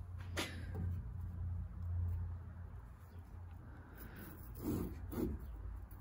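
Hand saw starting a cut in a wooden board: a single knock early, then two short, light saw strokes near the end as the kerf is begun, over a low steady hum.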